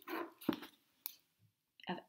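An old hardcover book being closed and lifted: a few short, sharp clicks and light paper handling. A voice comes back in near the end.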